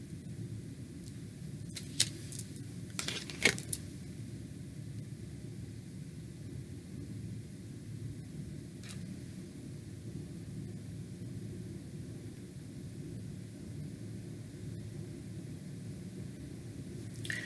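Tarot cards being handled and swapped, giving a few brief sharp clicks and rustles: one about two seconds in, a short cluster around three to four seconds, and one near nine seconds. Under them runs a steady low hum.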